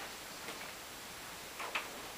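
A few faint, irregular taps, the loudest a quick double tap near the end: a person's footsteps as they walk out of the room through a doorway.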